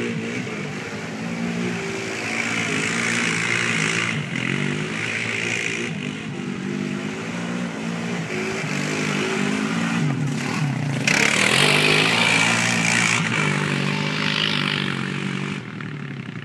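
Four-wheeler (ATV) engine revving up and easing off as it is ridden through mud puddles, its pitch rising and falling. A rushing hiss swells loudest about eleven seconds in for a couple of seconds, and the sound drops off just before the end.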